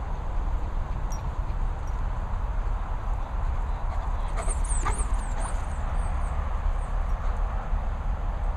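Wind rumbling steadily on the microphone, with a brief run of high, quick chirps a little past halfway.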